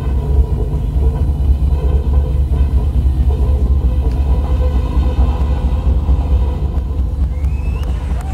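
Large wood bonfire burning with a steady low rumble, with music faintly underneath.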